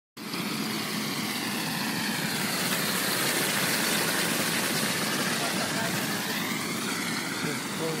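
A steady, loud hiss of water and air jetting out of a storm-sewer manhole cover under pressure. Storm runoff filling the drain tunnels is forcing the trapped air out through the manhole.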